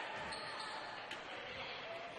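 Faint, steady gymnasium ambience of a basketball game in play: crowd and court noise, with a light knock about a second in, like the ball bouncing on the hardwood.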